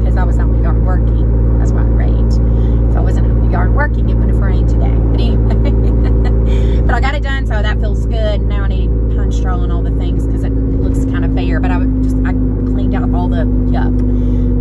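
Steady engine and road drone inside a moving Jeep's cabin, with a woman talking over it now and then.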